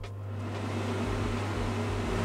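MEX slim under-cabinet range hood's extractor fan running: a steady hum with a whooshing air noise that grows gradually louder as the fan spins up.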